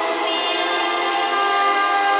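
Music from a song: held, sustained chord tones with hardly any bass. The chord changes shortly after the start.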